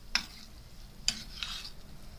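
A metal spoon stirring minced chicken keema in an enamelled frying pan. Two sharp scrapes of the spoon against the pan come about a second apart, with lighter scraping between them, over a faint sizzle of the frying meat.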